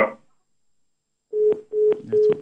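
A telephone line tone coming through the studio's phone link, after a caller failed to come through on air. It is a single low beep pulsing on and off about two to three times a second, with small clicks, and it starts a little past halfway after a moment of silence.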